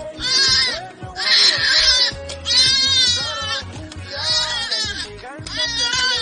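A goat bleating again and again, about five long quavering bleats, over background music.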